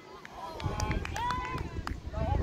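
Women's voices calling out across a football pitch, words unclear, over wind rumbling on the microphone.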